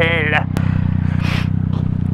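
Yamaha MT-09's inline three-cylinder engine running steadily with an even, unchanging note.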